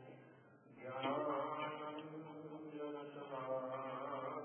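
A voice chanting a devotional verse in long, held melodic tones. It begins about a second in after a brief lull, over a steady low hum.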